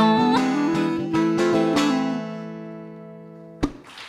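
The last notes of a live acoustic song. The final sung note ends just after the start, a clarinet climbs a few steps and holds its note, and the strummed string chord rings and fades until it is damped with a short thump about three and a half seconds in.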